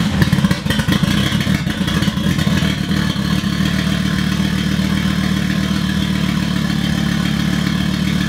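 Volvo V70 XC's five-cylinder engine idling just after starting. It is uneven for the first couple of seconds, then settles into a steady idle. It is running well with a replacement mass airflow sensor fitted, and the earlier idle problem seems to be cured.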